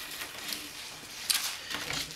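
Danish paper cord rubbing and rustling against the seat weave as it is handled and pulled through, with a brief louder scrape a little past the middle.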